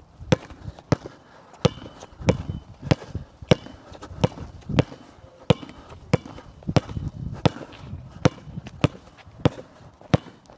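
A basketball being dribbled on a hard outdoor court in the two-dribbles-then-through-the-legs drill. It makes sharp, evenly spaced bounces, about three every two seconds.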